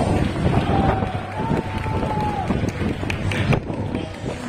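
A stadium loudspeaker voice announcing a player, with one long drawn-out call in the middle, over wind and crowd noise. A few sharp knocks come near the end.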